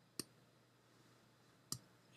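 Two sharp clicks of a computer mouse, about a second and a half apart, over near silence.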